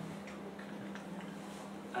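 Quiet room tone with a steady low hum and a few faint, light ticks.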